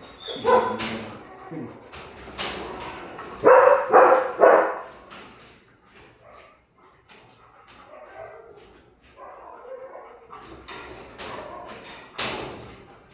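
A dog yelping and barking in short bursts. The loudest are three close together about three and a half to four and a half seconds in, with fainter sounds later.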